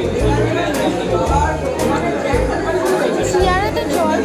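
Restaurant chatter: many voices talking at once over background music with a steady bass beat.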